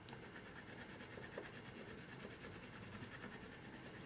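Faint scratching of a Caran d'Ache Neocolor II water-soluble wax crayon rubbed back and forth on watercolor paper, laying down a patch of color.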